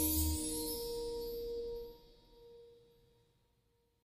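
The last notes of a circle-line train arrival melody ring out and fade. A low bass note stops almost at once, and the remaining held tones die away to silence in under three seconds.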